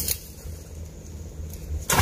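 Wind rumbling on the microphone, with a sharp click at the start and a louder sharp snap just before the end.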